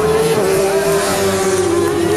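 Racing motorcycle engine at high revs, a held high note that rises slightly and then drops near the end as the bike passes.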